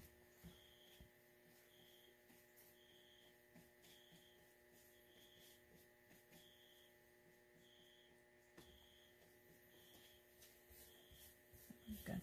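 Near silence: a steady electrical hum, with a faint short high beep repeating about once a second.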